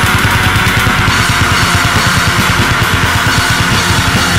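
Deathcore band playing a heavy song: distorted electric guitars in a loud, dense, unbroken wall of sound with a fast pulsing low end.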